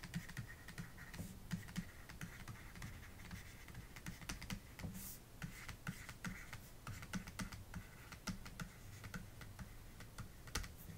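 Pen stylus tapping and scratching on a drawing tablet as handwriting is written: a string of faint, irregular clicks and short scratches.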